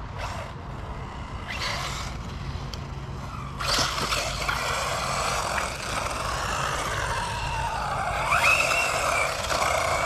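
Kyosho Inferno MP9e electric 1/8-scale RC buggy running on a dirt track. Its motor whine rises and falls with the throttle, with a clear rise near the end, over the hiss of tyres on dirt that gets louder about three and a half seconds in.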